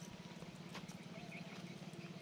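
A small engine running steadily, heard faintly as a fast, even low putter, with a few light clicks over it.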